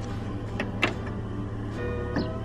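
A car engine idling steadily, with two light clicks about a quarter second apart a little past the middle, under soft background music.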